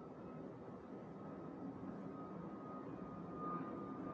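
Faint steady background noise with a thin, steady high whine running through it.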